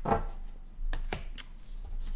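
Cards being handled and set down on a table: a short rustle at the start, then three sharp clicks about a second in.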